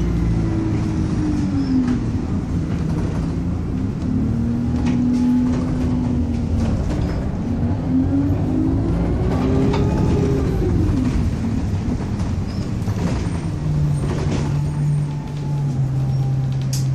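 Alexander Dennis Enviro200 bus engine and drivetrain heard from inside the passenger saloon. The pitch rises as the bus pulls away and falls as it eases off, twice, then settles into a lower steady hum near the end, with short rattles from the bodywork and fittings.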